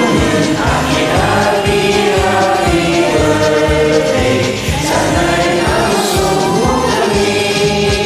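Several voices singing together, layered as in a group karaoke recording, over a backing track with a steady beat.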